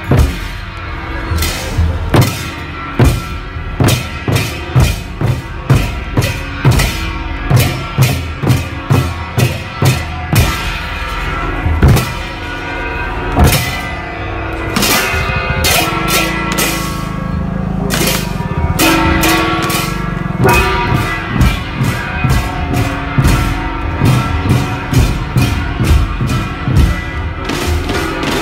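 Traditional Vietnamese drum troupe: hand-held barrel drums and a large cart-mounted drum beaten in a steady beat of about two strokes a second, with bright metal percussion over the drums.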